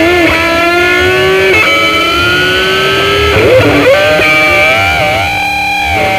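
Solo electric guitar played lead-style: long sustained notes bent slowly upward in pitch, with quick slides and vibrato wobbles between them.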